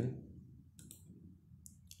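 A few faint computer mouse clicks, one just under a second in and a couple more near the end.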